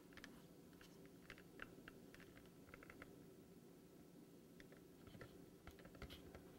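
Near silence: a faint steady room hum with scattered soft little ticks from fingers handling the skewers and fondant-covered heart.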